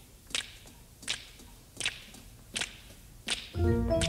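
Finger snaps keeping the beat over a hushed pause in a jazzy show tune, five sharp snaps about three quarters of a second apart, then a band chord comes in just before the end.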